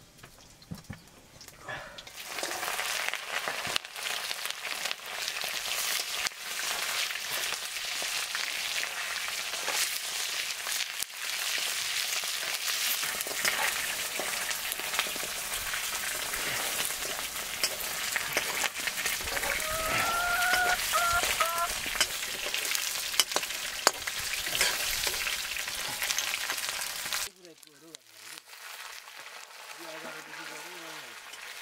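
Pork frying in hot oil in a wok over a wood fire: a loud, crackling sizzle that starts about two seconds in as the meat goes into the pan and cuts off suddenly near the end. A short high-pitched call rises briefly about two-thirds of the way through.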